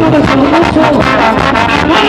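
Mexican banda music playing: brass holding a melody over a steady beat.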